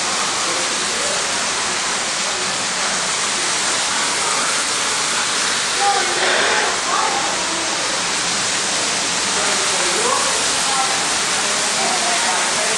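Steady rush of falling water from a waterfall feature, with faint voices mixed in.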